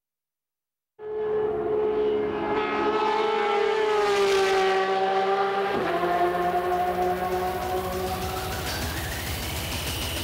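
A racing engine screaming at very high revs starts suddenly about a second in and holds a high note that sags slowly in pitch. About six seconds in it cuts abruptly to another high-revving engine note, with a rising whine in it near the end.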